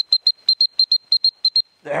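Dog training whistle blown in a rapid run of short high toots, about seven a second, calling the pointing-dog pup back to the handler. The toots stop just before the end.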